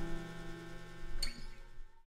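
Final strummed chord of a Clifton acoustic guitar ringing out and slowly dying away, with a short scrape about a second in before it fades to nothing.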